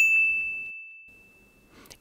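A single bright "ding" sound effect: one clear high tone that starts suddenly and fades away over about a second and a half. It is an edited-in tally chime marking another count of the spoken word "hole".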